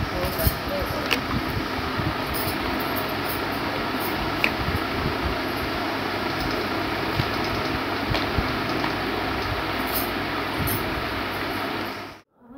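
Ceiling fan running with a steady whoosh, with light knocks and clicks from a phone being handled.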